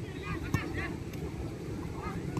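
High-pitched children's voices shouting across a football pitch, in short overlapping calls, over a low rumble of wind on the microphone. A single sharp knock stands out about half a second in.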